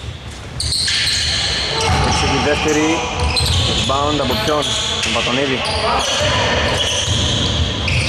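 Sounds of a basketball game on an indoor court: the ball bouncing and players moving on the floor, with voices calling out from about two seconds in.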